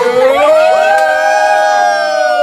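Several voices singing together, rising to one long held note.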